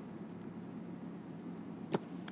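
Low steady background hum of a quiet recording room, with faint stylus strokes on a tablet screen and one sharp click near the end.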